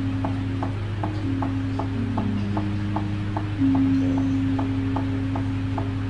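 Javanese langgam music from the wayang accompaniment: a steady ticking beat of about three strokes a second under a melody of long held notes that step down in pitch. A louder held note comes in a little past halfway, over a steady low hum.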